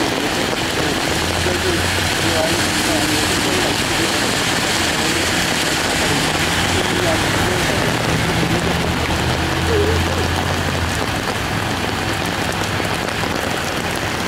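Steady rain and traffic noise on a wet street, with a vehicle engine humming low and faint voices in the background.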